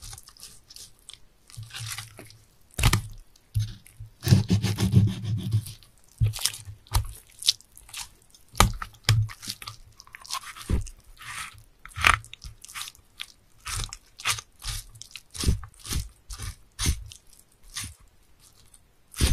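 A knife cutting up a sea bass for sashimi: a run of irregular crisp crunches and knocks as the blade goes through the fish and strikes the board, with a longer rasping stretch about four seconds in.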